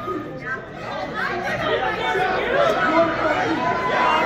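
Overlapping voices of spectators chattering and calling out in a large indoor hall, with no single clear speaker.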